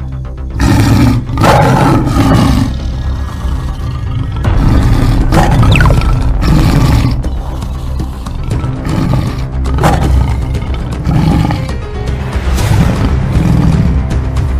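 Tiger roaring several times, over background music.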